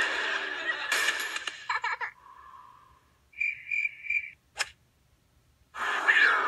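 End of a sitcom soundtrack: studio audience laughter dies away in the first second and a half, and a held tone fades out. Then come three short, evenly spaced beeping tones and a single sharp click, followed by near silence.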